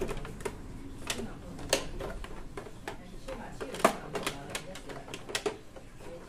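Irregular sharp clicks and knocks of plastic parts being handled inside an opened Epson L3110 inkjet printer, loudest a little under two seconds in and again near four seconds.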